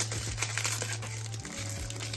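Foil wrapper of a Panini Donruss Optic basketball card pack crinkling and crackling as hands twist and pull at it, struggling to tear it open. Low steady background music runs underneath.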